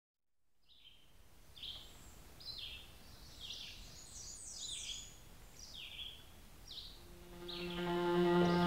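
A bird singing faintly: a series of short chirps that drop in pitch, about one a second, with music fading in near the end.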